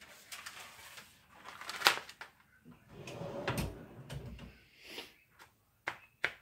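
Handling noises: a paper sandwich wrap sheet rustling as it is laid on a stone cooling slab and smoothed by hand. A sharp click comes about two seconds in, and a dull knock comes around the middle.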